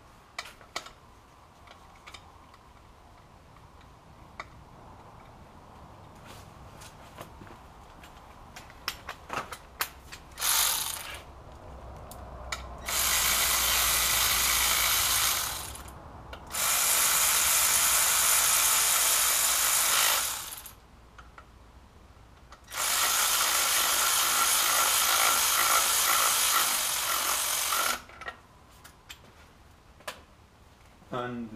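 Cordless electric ratchet running in the 6 mm Allen-head bolts that hold the oil pump: one short burst, then three even runs of several seconds each. Before them come scattered light clicks of the bolts and tools being handled.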